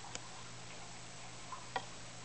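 A few short, faint clicks, the loudest near the end, as a caique lying on its back mouths and nibbles at the fingers scratching it.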